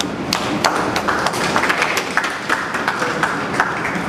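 Audience clapping in a hall: many separate, irregular hand claps rather than a dense roar of applause.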